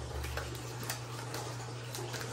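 Tarot deck being shuffled by hand: a few faint, light clicks of the cards over a steady low hum.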